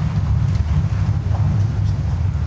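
Wind buffeting a course microphone: a steady, loud low rumble that flutters constantly.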